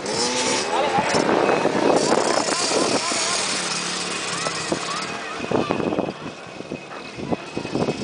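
Small dirt bike engines revving on a motocross track, their pitch rising and falling in the first few seconds, with sharp knocks and noise later.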